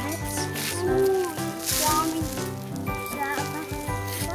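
Background music with held notes, with a few brief snatches of children's voices over it.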